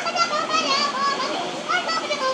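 Baby macaque crying: a run of short, high-pitched squeals, each rising and falling in pitch.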